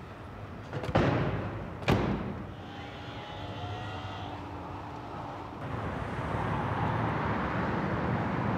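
Two car doors shut about a second apart, followed by a faint whine as the car moves off. From a little past halfway, a steady rush of city traffic.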